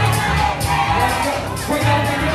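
Dance music with a heavy, regular bass beat over a cheering, shouting crowd.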